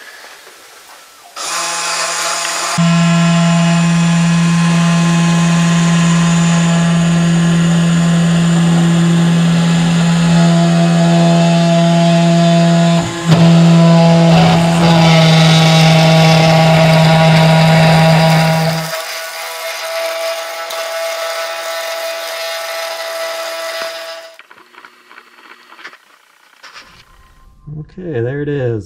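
3018 desktop CNC router's spindle motor running with a steady whine as the bit mills through a clear acrylic sheet, with changing tones from the machine's motors underneath and a sharp click about 13 seconds in. The spindle stops about two-thirds of the way through, leaving a fainter steady tone that ends a few seconds later.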